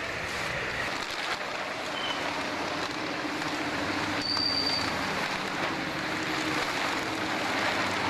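Steady rumble of road traffic crossing a steel bridge, with a brief high squeal about four seconds in.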